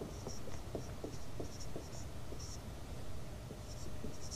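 Faint scratching of handwriting: short strokes of a writing tool on a writing surface as a worked maths answer is written out.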